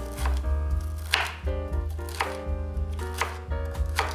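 Chef's knife chopping broccoli florets on a wooden cutting board, blade strikes against the board over background music.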